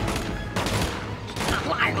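Movie gunfire: several shots in quick succession over a busy action-scene sound mix.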